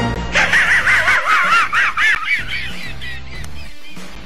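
Muttley, the Hanna-Barbera cartoon dog, doing his snickering laugh, a quick wavering cackle, over music; the laugh fades out after about three seconds and the music goes on alone.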